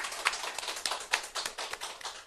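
Hand clapping: a run of quick, irregular claps.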